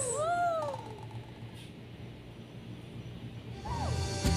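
A singing voice ends the song with a short rising-and-falling glide that dies away within about a second, then only faint background hum for about three seconds, with another brief glide just before the end.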